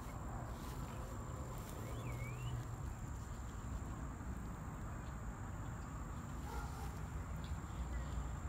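Outdoor ambience of a steady, high-pitched insect trill, typical of crickets, over a low rumble on the microphone, with a short chirp about two seconds in.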